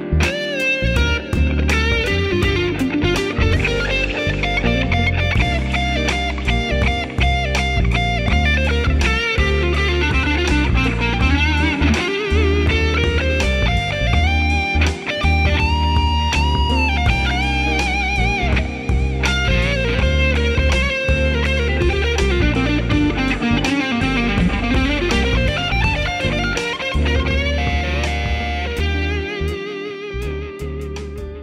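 Fender Custom Shop 1959 Telecaster Journeyman Relic electric guitar played through an amp, a lead line full of string bends and vibrato over a backing track with a low bass line. It fades toward the end.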